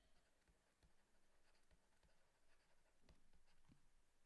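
Near silence, with a few faint ticks and scratches of a stylus writing on a tablet.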